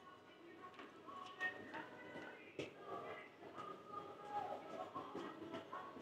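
Faint store background: piped music and distant voices, with a couple of light clicks.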